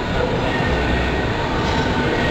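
Steady rumbling background noise of a large gym, with a constant low hum and an even hiss and no distinct strikes.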